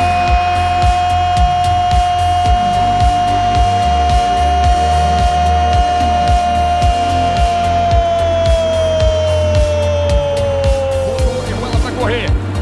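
A Brazilian football commentator's long drawn-out goal cry ("Gooool"), one held note lasting about eleven seconds that sinks in pitch near the end. Under it runs background music with a steady beat.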